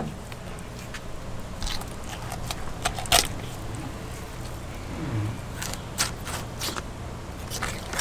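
Fillet knife cutting along a blackfin tuna's backbone: scattered crackles, scrapes and small snaps as the blade works past the bones, the loudest about three seconds in.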